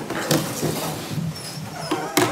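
Handling and movement noise as a man sits down at a table microphone: rustling and small knocks, with a few short faint high squeaks in the second half.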